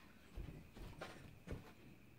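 Faint footsteps on a floor: a few soft thuds.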